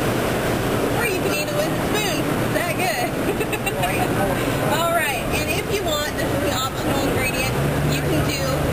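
Busy city street noise: a steady wash of traffic with people's voices nearby. A low engine hum comes in near the end.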